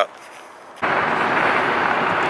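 Steady road and wind noise of a car travelling at highway speed, heard from inside the car. It cuts in suddenly a little under a second in, after a brief stretch of faint background.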